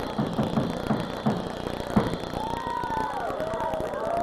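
Live punk rock band: the drums pound a steady beat of about four hits a second, ending on one final loud hit about halfway through. Wavering high-pitched tones follow.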